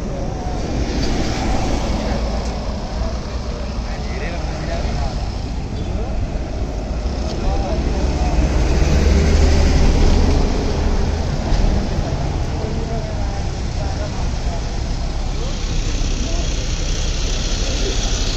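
Road traffic with bus engines running close by: a steady low engine rumble that swells to its loudest about nine to ten seconds in, then eases.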